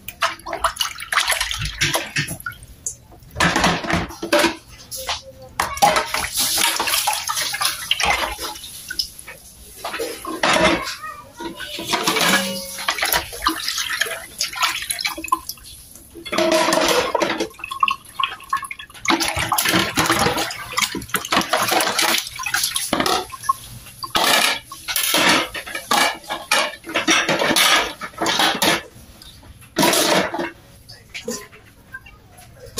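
Water running and splashing in stop-start spurts as dishes and stainless steel bowls are rinsed by hand, with knocks and clinks of the dishes against each other.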